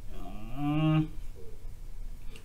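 A man's voice drawing out a long hesitation sound, like a held "euhh", that rises in pitch at first and then holds for about a second.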